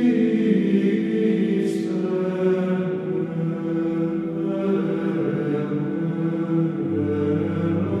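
Background music: slow choral chant with long held notes in several voices. A lower held note comes in near the end.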